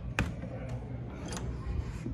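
Door knob on an old wooden door being gripped and turned, the latch giving a sharp click about a fifth of a second in and lighter clicks near the middle and again after a second.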